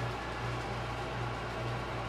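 Steady low hum with a faint, even hiss, wavering slightly in level: room background hum.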